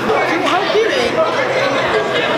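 Only speech: several voices talking over one another.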